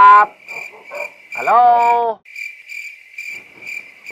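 A cricket chirping steadily, about three chirps a second. About a second in, a man calls out a drawn-out "hello" over it.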